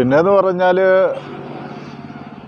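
A man speaking Malayalam for about a second, then a quieter steady motor hum, like a vehicle engine running in the background.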